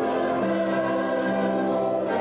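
A mixed choir of men and women singing, holding long sustained notes.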